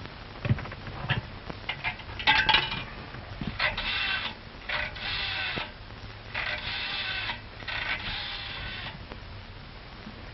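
A nickel dropped into a pay telephone with a short ring, then a rotary dial pulled round and whirring back four times as a number is dialled, after a few handling clicks.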